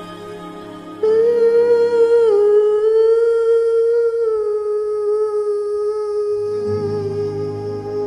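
A woman's voice hums one long held note over a karaoke backing track. It comes in loud about a second in, steps down slightly soon after, and holds with a light vibrato while the accompaniment swells again near the end.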